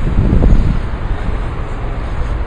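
Wind buffeting the handheld camera's microphone: a loud, uneven low rumble.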